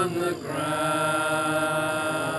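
A group of voices singing a hymn together, holding one long note from about half a second in.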